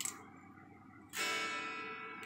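An electric guitar chord is strummed once about a second in and rings out, fading slowly. It is heard as the bare, unamplified strings: no signal reaches the amp through the Ammoon looper pedal.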